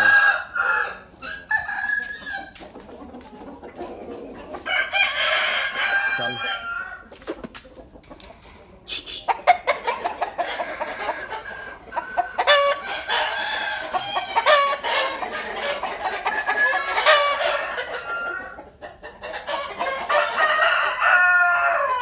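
Several roosters crowing again and again, in about five loud bouts of one to several seconds each that sometimes overlap.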